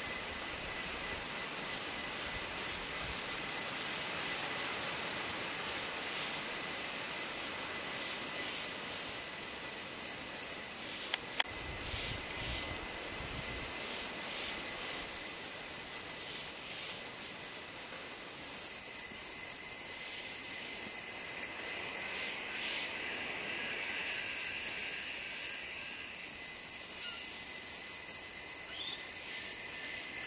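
Insect chorus: a steady, shrill, high-pitched buzzing that eases twice and swells back up, with a few faint short chirps near the end.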